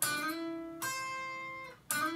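Electric guitar played as a lead line: single notes picked and left to ring, a new note coming in just under a second in and another near the end.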